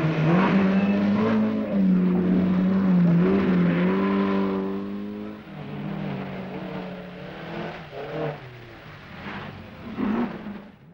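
Rally car engine running at high revs, its pitch wavering up and down. After about five seconds it drops to a quieter, steadier note.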